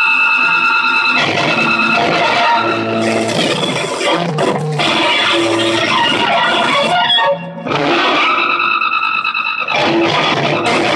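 Live noise improvisation: loud, dense electronic noise with held high-pitched tones that shift abruptly, briefly dropping out about seven seconds in before the held tones return.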